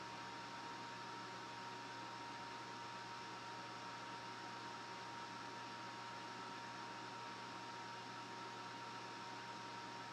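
Steady, unchanging hiss with a low hum and a thin high-pitched whine: constant background noise with no distinct events.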